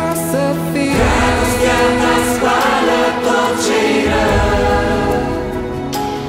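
A mixed choir of children and adults singing a Romanian Christian worship song in held, sustained notes over a steady low accompaniment.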